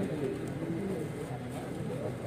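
Low, overlapping murmur of several people talking at once, with no single clear voice.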